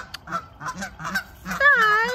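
Canada geese honking: a run of short calls, about three or four a second, then one loud, longer honk that bends in pitch near the end.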